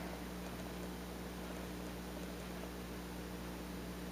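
Quiet room tone: a steady low electrical hum with hiss, and no distinct cutting sounds from the knife in the soft soap.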